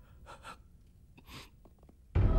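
A few faint, short gasping breaths over near quiet.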